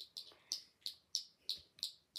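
A bird chirping: a steady run of short, high chirps, about three or four a second.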